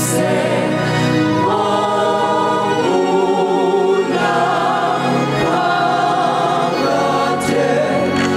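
Small gospel choir singing a slow hymn in a Nguni language into microphones, sustained voices with vibrato, over electronic keyboard accompaniment; the chord changes about a second and a half in and again about three seconds in.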